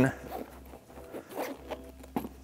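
Zipper on an HK Army Exo marker case being pulled open quietly.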